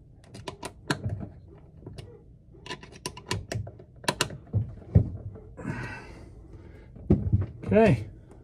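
Rosen sun visor mount and its hardware being worked by hand, giving irregular clusters of sharp clicks and light ticks, with a brief rub or scrape about six seconds in. A short vocal grunt from the man comes near the end.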